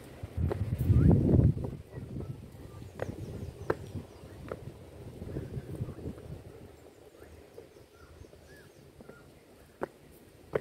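Footsteps on stone steps: a few sharp clicks about three-quarters of a second apart, after a brief loud low rumble on the microphone about a second in. Faint high chirps near the end.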